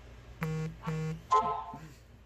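Two short, flat, buzzy electronic beeps, each about a third of a second long and about half a second apart, followed by a brief, louder, higher-pitched wavering sound.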